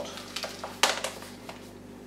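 A few light clicks and knocks as a small plastic plant pot full of loose, gravelly potting media is handled and tilted over a plastic tray, the sharpest click just under a second in.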